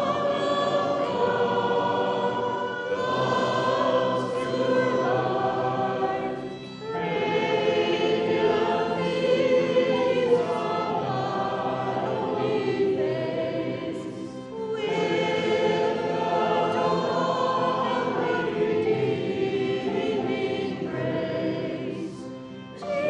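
Many voices singing a slow Christmas carol together, in long held phrases with a short break for breath about every seven seconds.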